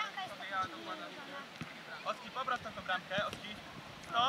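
Several children's voices, faint and at a distance, calling and chattering in short bursts.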